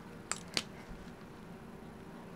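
Two light clicks in quick succession within the first second as a marker pen is picked up and handled on a wooden desk, then quiet room tone.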